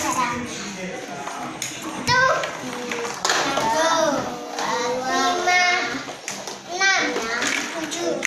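Young children's high-pitched voices talking and calling out over one another during play.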